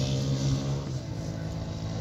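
An engine running steadily, its pitch settling a little lower about a second in.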